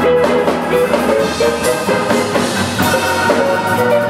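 Live gospel trio playing: a keyboard melody of quick short notes over a drum-kit groove and electric guitar.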